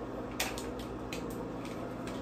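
A few light plastic clicks and knocks as a rotating hot-air brush is handled, the sharpest about half a second in, over a faint low hum. The brush is not switched on.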